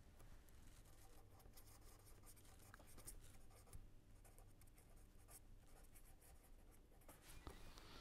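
Faint pen scratching on paper in many short strokes as words are handwritten.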